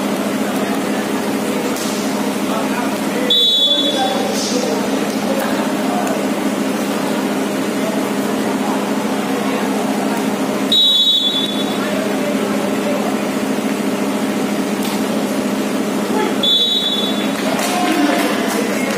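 Referee's whistle blown three times in short half-second blasts: a few seconds in, about eleven seconds in, and near the end. Between the blasts there is steady crowd chatter and a low hum.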